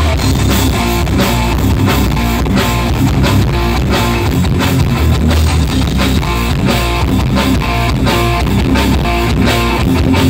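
Rock band playing live with electric guitar, bass guitar and drum kit, an instrumental passage over a steady beat.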